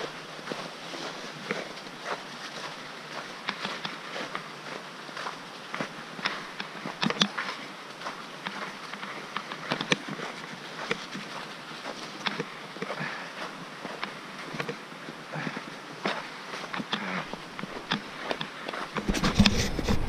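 Mountain bike rolling down a snow-covered forest track: a steady hiss of tyres on snow with frequent irregular clicks and rattles from the bike. A louder rumble comes in about a second before the end.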